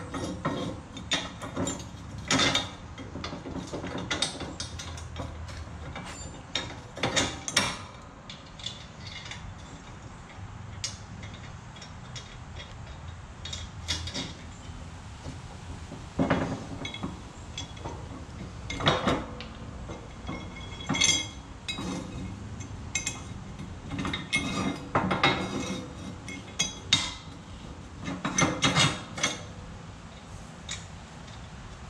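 Steel bolts, nuts and brackets clicking and clinking irregularly as bolts are pushed through a snow plow frame's mounting brackets and nuts are threaded on by hand.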